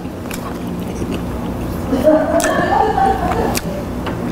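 A man eating a mouthful of grilled fish, with a held, humming voice of enjoyment from about two seconds in and a few light clicks of chopsticks.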